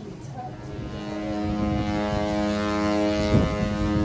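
Ship's horn sounding one long, steady blast that swells in about a second in and holds, with a brief thump near the end.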